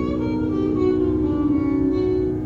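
Violin played in Carnatic style, bowing a sustained note that slides up in pitch and is held, with ornamental glides, over a steady drone.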